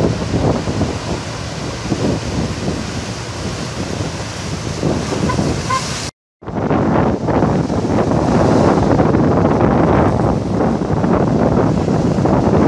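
Rough sea surf with wind buffeting the microphone. A little past halfway the sound cuts out for a moment, then comes back louder.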